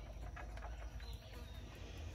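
A few faint clicks and knocks as a bucket handle is hung on the hook of a hanging spring scale, over a low steady rumble.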